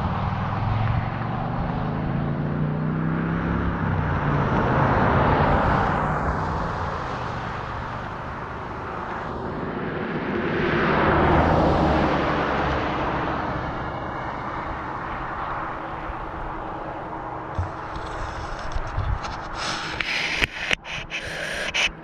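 Highway traffic passing: vehicles swell and fade, with two louder passes about five and eleven seconds in. Near the end come close clicks and knocks as a camera monopod is collapsed.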